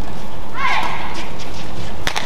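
Court shoes squeaking on the badminton court floor in a short gliding squeal about half a second in, followed by a few faint sharp hits of rackets on the shuttlecock, over steady arena noise.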